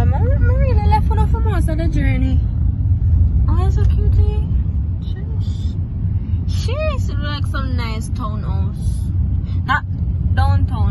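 Steady low rumble of a moving car heard from inside the cabin, with people talking over it.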